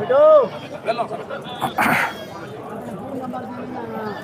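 Men's voices and chatter, with a short call that rises and falls at the very start and a brief hiss about two seconds in.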